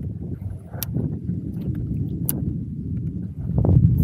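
Wind rumbling on the microphone over choppy lake water lapping at a kayak hull, with two sharp clicks a second and a half apart.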